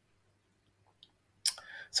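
A pause in a man's talk: near silence, a faint tick about a second in, then a sharp click about a second and a half in and a soft sound just before he starts speaking again.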